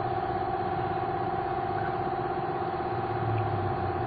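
A motor scooter's engine running steadily at an even speed, with a constant high whine over it.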